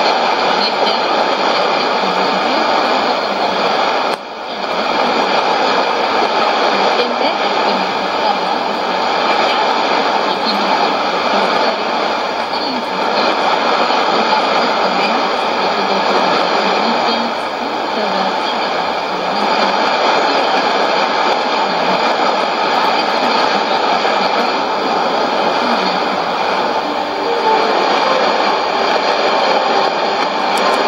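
Shortwave AM reception of Voice of Indonesia on 9525.9 kHz through a Sony ICF-2001D receiver: a weak voice buried in heavy static and hiss, with the signal fading. A brief deep fade comes about four seconds in.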